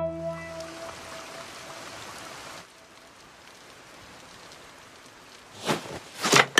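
Steady rain falling, after the last plucked-string music notes die away in the first second. A short sharp sound comes near the end.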